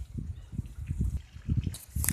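Low, uneven rumbling with soft bumps on a phone microphone as it is handled and moved about.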